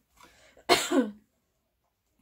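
A person's single cough, sudden and short, about three-quarters of a second in.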